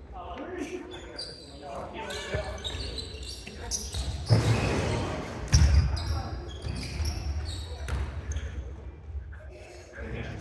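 Basketball game in a gym: a basketball bouncing on the wooden court, with players' voices calling out and echoing in the hall. Two heavier thuds stand out, about four and a half and five and a half seconds in.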